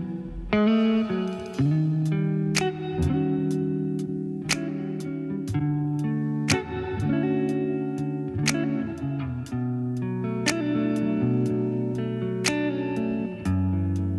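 Instrumental music from a live band: guitar playing held chords, with a sharp percussive hit about every two seconds.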